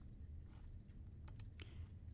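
Faint computer mouse clicks, a quick few about one and a half seconds in, over a low steady hum.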